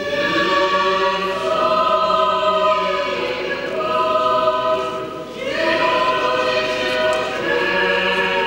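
Orthodox church choir singing a cappella: long held chords in phrases that shift to new pitches every second or two.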